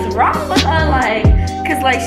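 Background lo-fi hip-hop music with a steady beat and a deep kick drum a little under twice a second, with women's voices over it.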